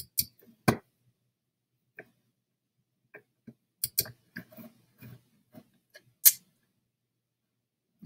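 A scattering of short, sharp computer mouse clicks at irregular intervals with quiet gaps between them, the loudest about six seconds in.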